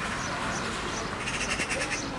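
Outdoor ambience with a bird calling: a few short high chirps, then a little past a second in a quick chattering run of about eight calls.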